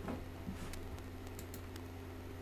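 Several soft, irregular clicks and taps from computer input at a desk, over a steady low electrical hum.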